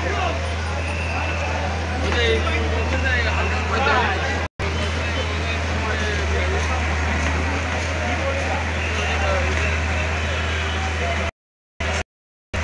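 A hydraulic excavator's diesel engine running with a steady low drone under the chatter of a large crowd. The audio drops out for an instant about four and a half seconds in and again near the end.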